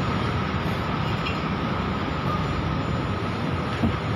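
Steady construction-site machinery noise with a faint steady whine running through it, and a short knock near the end.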